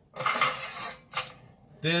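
Kitchenware being handled on the counter: a scraping rattle lasting most of a second, then a single short clink.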